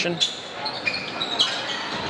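Basketball being dribbled on a hardwood gym court during play, with a few brief high squeaks and a sharp knock about one and a half seconds in, over the echoing background noise of the gym.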